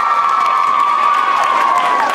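Audience applauding and cheering at the end of a song, with one long high-pitched whoop held over the clapping that falls away near the end.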